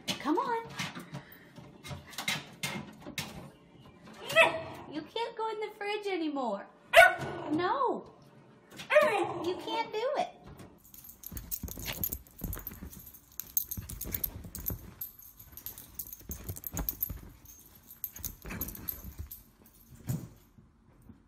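A puppy whining and yelping in several short cries that slide down in pitch over the first ten seconds. This is followed by a quieter stretch of knocks and rustling with a faint steady high tone.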